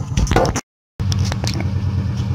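Knocking and rustling from a handheld phone being moved about. The sound drops out completely for about a third of a second, then a steady low machine hum with a few light clicks takes over.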